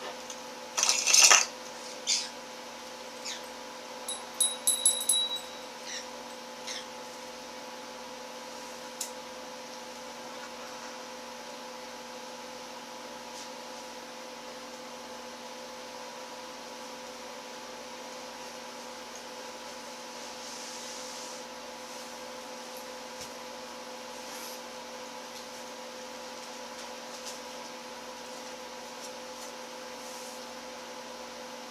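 Steady electrical hum, with a few small clicks and taps of soldering work on lamp wiring in the first several seconds. The loudest is a short rush of noise about a second in.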